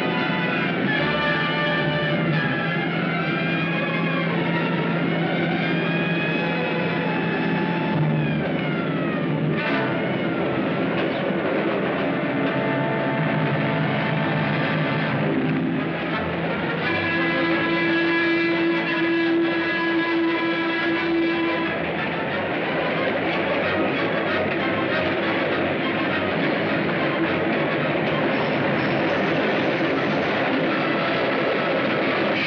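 Dramatic orchestral film score, loud and continuous, with sliding notes through the first ten seconds and held chords later on.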